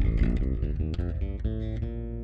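Electric bass guitar playing through the notes of the key of B-flat in the low frets: a quick run of single plucked notes, stepping from pitch to pitch, then one note held near the end.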